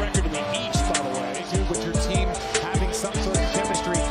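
Music with a heavy beat: deep bass drum hits that fall in pitch, held synth tones and quick hi-hat ticks.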